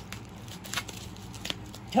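Small items being handled: a few faint clicks and rustles over a low steady hum.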